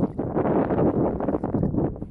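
Wind buffeting the microphone outdoors: a loud, gusty rumble that rises and falls irregularly.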